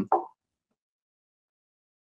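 Near silence after a brief trailing syllable of the voice: a gap in speech with no other sound.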